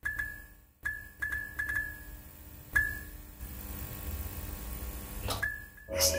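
Title-sequence sound effects of a flickering neon sign. There are irregular sharp clicks, each followed by a brief high ping, about six of them in the first three seconds, over a steady low electrical hum. A whoosh rises near the end.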